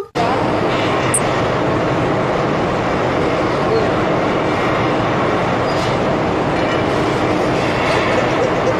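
Steady, loud mechanical noise of factory machinery running, starting abruptly just after the opening and holding an even level.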